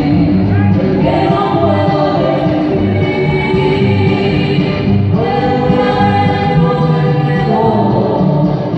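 Live music played through a PA system: a man and a woman singing together with held, wavering notes, accompanied by acoustic guitar.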